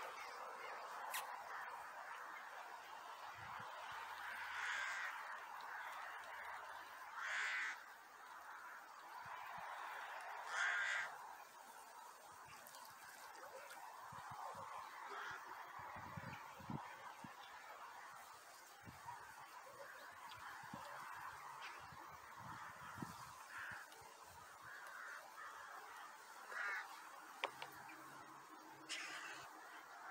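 Outdoor quiet with a few short, loud bird calls, three of them a few seconds apart in the first half, the third the loudest. After that it is quieter, with faint clicks and soft knocks.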